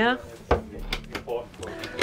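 Sharp click of a push-button latch on an overhead cupboard about half a second in, followed by a few lighter knocks as the cupboard door is worked open.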